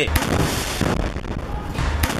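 Combat sound of gunfire and blasts: a dense, continuous crackle of shots over a heavy rumble, with deeper thuds at the start and near the end.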